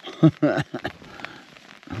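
A man's short laugh, then light scattered crackles and clicks of nylon tent fabric and gear being handled as he shifts about; a spoken word begins at the very end.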